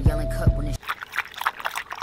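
Background music with a steady beat that cuts off suddenly under a second in, followed by a few sips and swallows of coffee drunk from a glass mason jar.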